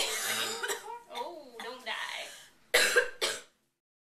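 Short bits of a woman's voice, then two quick coughs close together; the sound then cuts off abruptly.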